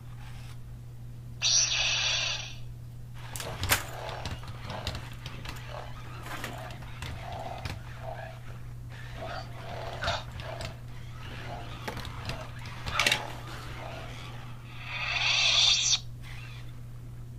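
Interactive Yoda toy demonstrating a lightsaber form: electronic lightsaber sound effects from its speaker, with a loud hissing burst about a second and a half in and another near the end, and clicks and short sounds between as it moves.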